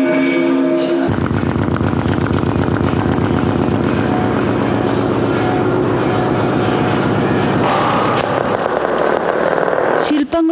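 An engine running steadily, after a held musical chord cuts off about a second in.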